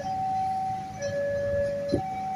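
Railway level-crossing warning alarm sounding its repeating two-tone electronic chime, a higher tone then a lower tone about a second each, the signal that a train is approaching the crossing. A low rumble runs underneath, with a sharp click near the end.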